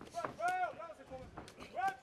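Short shouted calls from ringside, each rising and falling in pitch: two near the start and one near the end. Two sharp smacks of strikes landing, about half a second and a second and a half in.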